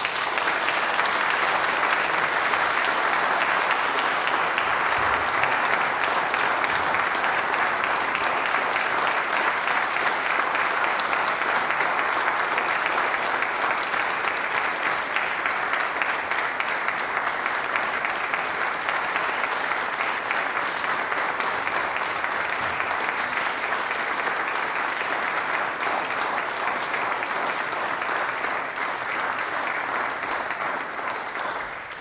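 Audience applauding: dense, even clapping that holds steady and eases slightly in the second half.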